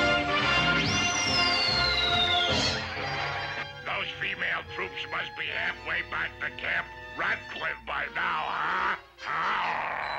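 Cartoon music with a whistle-like tone that shoots up and then slides slowly down over about a second and a half. It is followed by several seconds of a cartoon voice jabbering in quick, duck-like gibberish with no real words.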